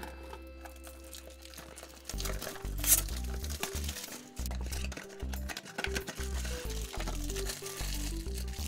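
Soft background music, with a pulsing bass line coming in about two seconds in. Over it, the crinkling and crackling of a Funko Mystery Mini blind box's cardboard and plastic packaging as it is opened by hand.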